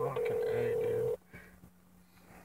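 Smartphone keypad tones over the speakerphone: one steady beep, held a little longer than the short beeps just before it, that cuts off sharply about a second in.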